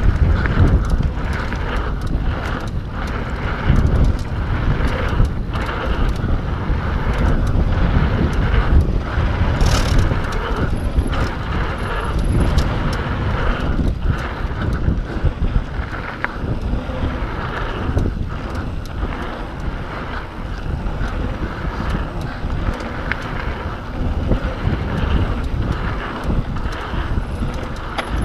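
Wind buffeting the microphone of a camera riding on a mountain bike at speed down dirt singletrack. Under it are tyre rumble and frequent clattering knocks as the bike jolts over the trail.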